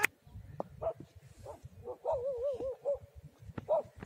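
A dog barking a few times in short calls, with one longer wavering call about two seconds in.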